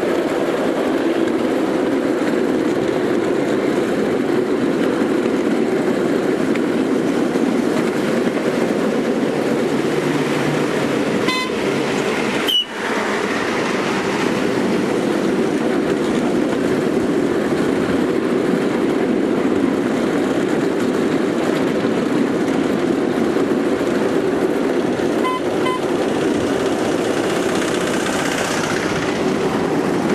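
Ride-on miniature railway train running along the track, with a steady rumble from its wheels on the rails. A short toot comes about eleven seconds in and another later on, and a sharp click sounds just after the first.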